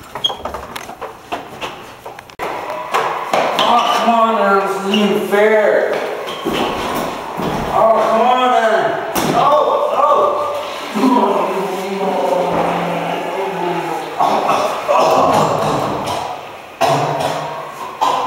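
Young men's voices shouting and crying out without clear words, with thumps and knocks as a boy is wrestled into a bathroom for a swirly, and one sharp bang about halfway through.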